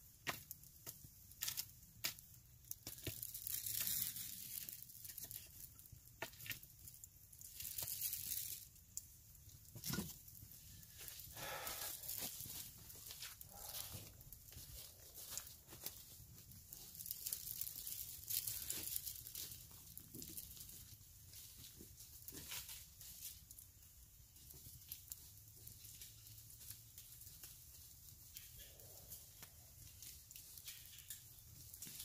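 Dry fallen leaves crunching and rustling underfoot, in faint, irregular crackles.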